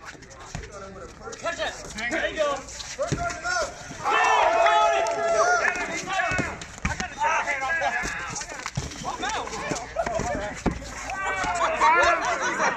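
A group of people shouting and hollering excitedly, loudest about four seconds in, with a few sharp thumps of rubber dodgeballs striking the pavement.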